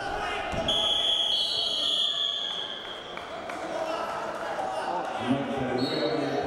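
A thud as wrestlers' bodies hit the mat about half a second in, followed by a referee's whistle held for about two seconds. The whistle sounds again briefly near the end, over a man's voice and the din of a large hall.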